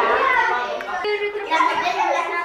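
Children's voices talking during play, in a run of unbroken speech that the transcript did not catch as words.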